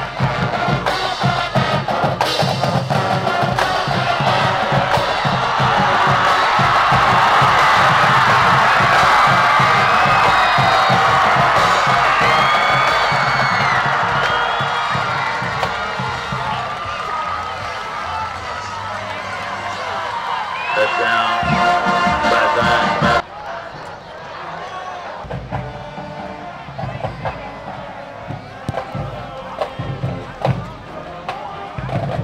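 Football stands crowd cheering and shouting over music with a steady beat, the cheer swelling to a peak several seconds in. The crowd noise cuts off abruptly near the end, leaving the music.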